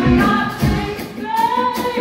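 Female vocalists singing a pop-soul song with a live band, drum hits steady underneath; the band eases off briefly about a second in while the voice holds a rising note.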